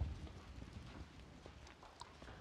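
Faint handling of a Bible and papers on a wooden pulpit: a few light taps and page rustles, the loudest right at the start, over a low room hum.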